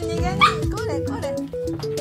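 A Border collie gives a short bark or yelp about half a second in, over background music with a plucked melody.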